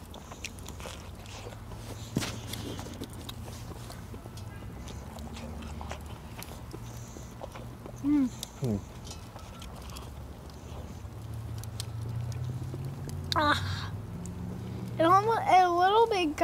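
Wood fire crackling in a steel fire pit, faint scattered pops over a steady low hum that grows louder and rises in pitch in the second half. A short vocal sound comes about eight seconds in, and brief voice sounds near the end.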